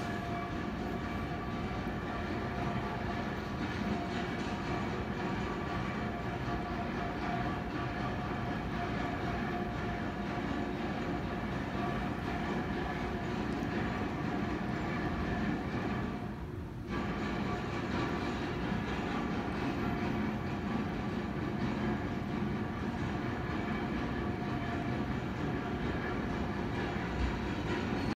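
A steady mechanical drone with several held tones running throughout, dipping briefly about two-thirds of the way through.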